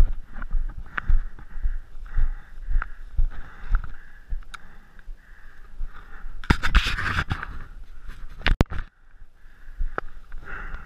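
Footsteps and rustling as a paintball player moves through dry grass and brush, with a louder stretch of rustling and scraping about six and a half seconds in and two sharp clicks soon after.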